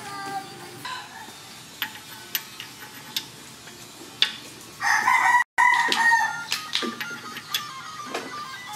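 A rooster crowing once, loudly, about five seconds in, broken by a brief dropout partway through. Around it, scattered light clicks and taps from hands working inside a bare engine block's crankcase.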